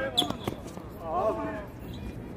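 Tennis ball struck and bouncing on a hard court, with a few sharp hits in the first half second, followed by a player's voice calling out about a second in.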